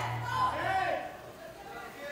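Faint shouting voices in a gym between louder calls, over a low steady hum that fades about a second in.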